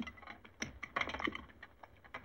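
Cutlery clicking and scraping against plates and dishes as food is eaten hastily: a quick, irregular run of small clicks.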